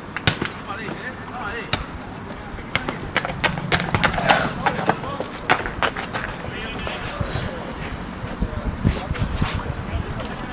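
Distant voices of players and spectators calling out across an open rugby pitch, with many scattered sharp clicks and knocks throughout.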